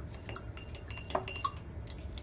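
A paintbrush tapping and clinking against the inside of a glass jar of rinse water as it is swished clean: a run of light clinks, several with a short glassy ring, and two sharper knocks a little past the middle.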